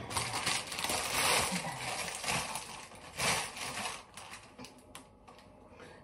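Scattered light clicks and rustles as vegetables are handled at a kitchen sink, dying away about four seconds in.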